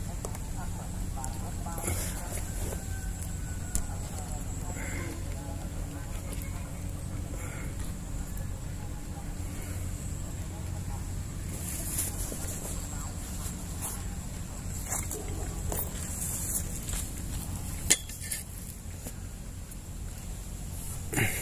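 Steady low outdoor rumble with a faint high steady tone, broken by a few short clicks and knocks; the sharpest click comes a couple of seconds before the end.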